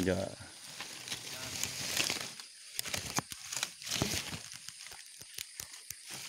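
Dry grass nest material rustling and crackling as it is handled close up, a run of small irregular crackles that grows busier after about two seconds.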